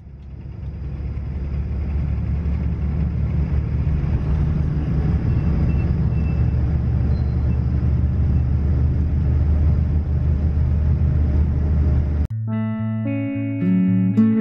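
Steady low road and engine rumble of a moving car heard from inside the cabin, fading up over the first couple of seconds. About 12 seconds in it cuts off abruptly and plucked guitar music takes over.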